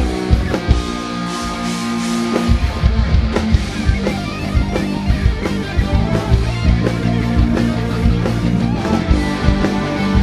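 Live rock band playing an instrumental break: electric guitar lead over bass guitar and drum kit, with no singing.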